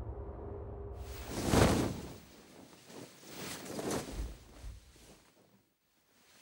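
Horror-trailer sound design: a low droning tone gives way to a whoosh that swells and fades about a second and a half in. Softer swishing sounds follow, and the sound nearly drops out near the end.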